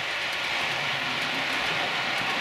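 Model Blue Pullman diesel train running on the layout with its DCC sound on: a steady running noise that grows slightly louder as the train approaches.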